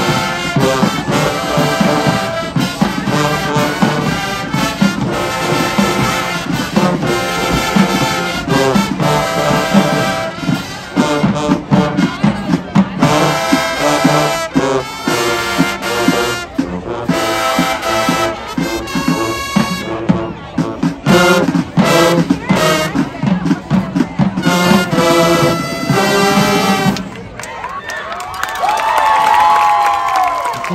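High school marching band playing a brass arrangement, with trumpets, trombones and sousaphones over a steady drum beat. The music stops about three seconds before the end, and voices follow.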